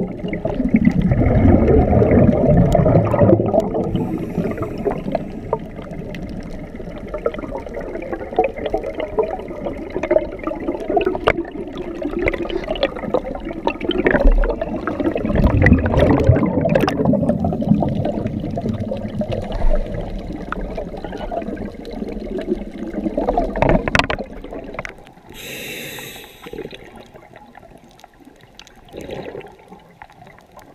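Underwater rush and rumble of bubbles and splashing water as divers plunge in from a boat overhead, with heavy surges of churning, the strongest about midway. Near the end it falls to a quieter underwater hiss.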